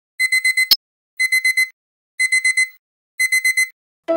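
Digital alarm clock beeping: four groups of four quick high-pitched beeps, one group a second, with a sharp click just after the first group.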